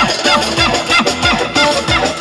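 Loud amplified live dance music from a party band with a keyboard: a fast steady beat under a quick melody full of bending, ornamented notes.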